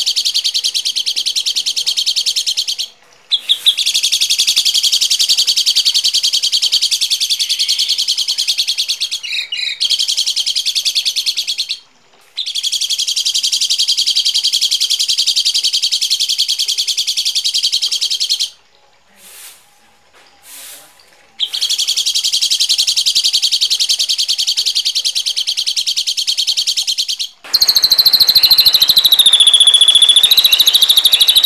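Recorded songbird giving harsh, rapid buzzy chatter in long bouts of several seconds, broken by short pauses. Near the end a different, louder and noisier call takes over, with a falling whistle running through it.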